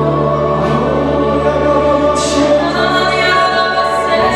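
Live worship song: several singers singing together into microphones over an electric keyboard, played loud through a PA system.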